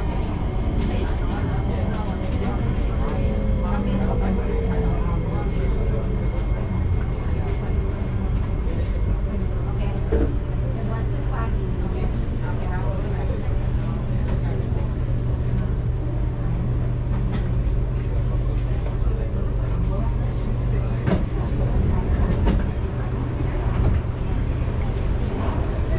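Interior sound of a Singapore MRT train slowing along a station platform. An electric traction whine falls in pitch over the first few seconds as the train brakes, over a steady low hum from the car's equipment.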